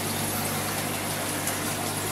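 Aquarium air pump or filter humming steadily, with air bubbles streaming up through the tank water.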